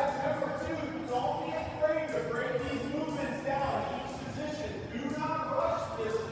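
Indistinct voices echoing in a large gym hall.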